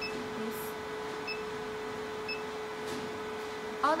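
Three short, high electronic beeps from the 808 nm diode laser machine's touchscreen as buttons are pressed, about a second apart. Under them is a steady hum with fan-like noise from the running machine.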